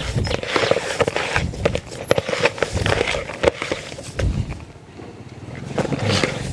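Hands squeezing and kneading damp bran-based fishing groundbait in a plastic basin: a run of irregular wet squishes and scrapes against the basin, easing off for a moment near the end.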